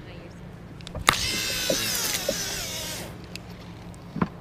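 A Shimano conventional fishing reel's spool spinning as line pays out on a cast. A sharp snap about a second in is followed by a whirring whine that falls steadily in pitch for about two seconds as the spool slows and stops.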